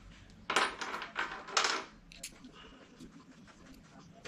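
Small metal machine screws clinking and rattling as they are handled, in three quick clattering bursts in the first two seconds, followed by a few faint ticks.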